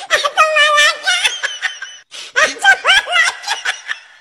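A person laughing hard in high-pitched, wavering bursts. The laughter breaks off about halfway, then starts again, rising in pitch, and fades near the end.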